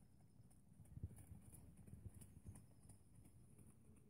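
Faint, soft hoofbeats of a pony moving over a soft arena surface: a few low, dull thuds at uneven intervals, most of them in the first half.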